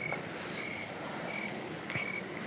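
Crickets chirping: a regular series of short high chirps, about one every two-thirds of a second, over faint outdoor background noise.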